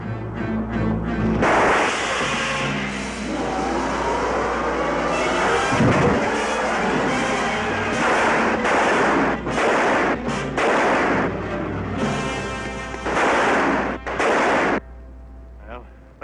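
Old film soundtrack: dramatic music over a car forcing its way through a police roadblock, with a quick string of loud gunshots from about eight seconds in that cuts off sharply near the end.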